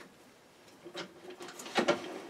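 Cast-iron tool rest and tailstock being slid along the bed of a mini wood lathe: a faint scrape, a sharp metal click about a second in, then a louder knock near the end.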